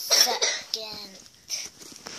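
A child coughing: a loud, rough burst in the first half-second, followed by a short voiced sound.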